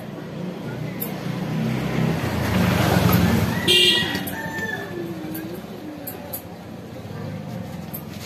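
A road vehicle passing, its sound swelling to a peak about three seconds in and then fading, with a short horn toot near the middle.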